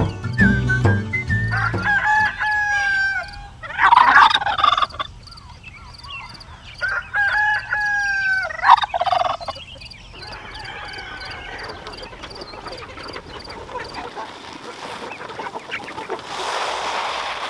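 A rooster crowing twice: each call is a long held note that breaks into a louder rough ending. It follows a brief stretch of background music with a beat, and quieter poultry noise follows it.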